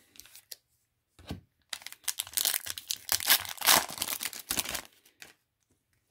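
A trading-card pack wrapper being torn open and crinkled. There are a few faint clicks at first, then from about two seconds in a run of crackling bursts that lasts roughly three seconds.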